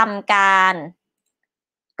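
A woman's voice speaking a short Thai phrase, then cutting off to dead silence about a second in.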